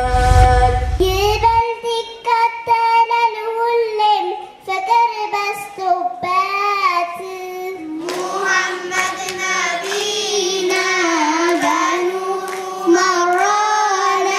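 A child singing a devotional Islamic song (menzuma) into a microphone, with a deep rumble under the first second and a half; about eight seconds in it changes to another child's singing.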